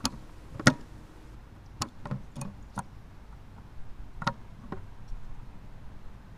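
Handling noise from a small quadcopter being worked on by hand: a string of sharp clicks and knocks from its frame and parts, about eight in all, the loudest about a second in.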